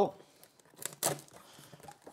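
A pocket knife slicing and scraping through packing tape on a cardboard box, with two short sharp rips about a second in. The knife is not cutting well.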